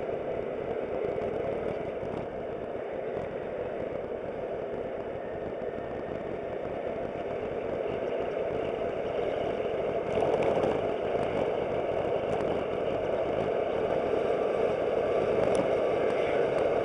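Aprilia SportCity scooter under way: engine running steadily with road and wind noise, getting louder about ten seconds in.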